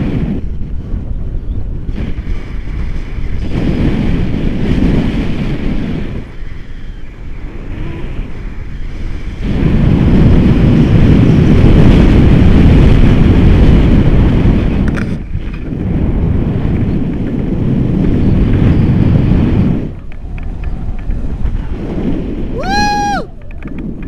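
Wind buffeting the microphone of a camera on a tandem paraglider in flight. It is a loud, deep rush that swells and fades in gusts, strongest in the second half, with a brief dip about two thirds of the way through.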